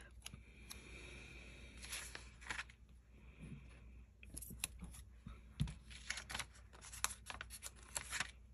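Paper stickers being peeled from their backing sheet and pressed down onto planner pages by hand: quiet, scattered soft clicks, taps and short paper rustles.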